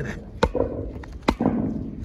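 Solid ice packed inside a rusty metal pipe, knocked by a gloved hand: two sharp cracks about a second apart.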